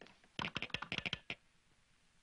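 Telegraph instrument clicking out Morse code: a quick run of about ten sharp clicks starting about half a second in and lasting under a second.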